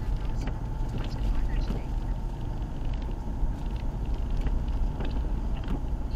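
Inside a moving car on a wet road: steady low engine and tyre rumble with road noise.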